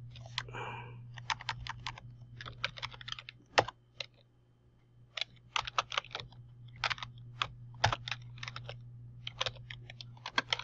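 Typing on a computer keyboard: quick runs of keystrokes with short pauses between them, and two louder key strikes, one about a third of the way in and one near the end.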